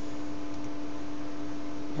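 Steady electrical hum: one constant tone near 300 Hz with fainter higher tones over a faint hiss.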